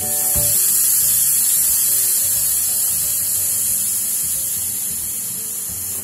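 Steam hissing loud and steady out of a pressure cooker's vent as its whistle weight is lifted by hand, letting the pressure out before the lid is opened.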